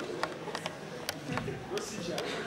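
Audience applause dying away into a few scattered, separate claps, with faint audience murmur behind.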